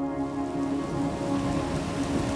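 Steady rain falling, an even hiss of noise, over sustained background music tones.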